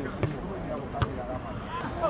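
Players and spectators shouting across a football pitch, voices rising and falling, over a steady low rumble of wind on the microphone. Two sharp thuds cut through, about a quarter second in and again about a second in.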